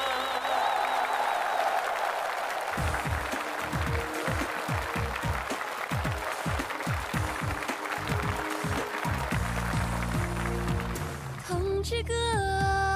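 Crowd of soldiers applauding after a song ends, as the instrumental introduction of the next song starts up under the clapping with a run of low, quick beats from about three seconds in. A woman's singing voice comes in near the end.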